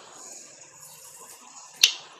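Quiet room with a single sharp click near the end.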